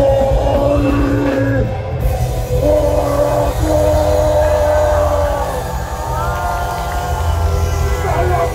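Live punk rock band playing loud, with a heavy, steady bass and long held melodic notes, heard from within the crowd.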